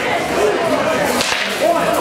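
Rapier blade striking during a fencing exchange: one sharp crack about a second in, over the talk of people in the hall.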